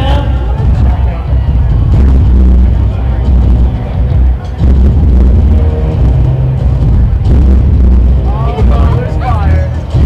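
Loud amplified music over an outdoor PA, dominated by a heavy bass that pulses in long blocks, with a voice coming over it near the end.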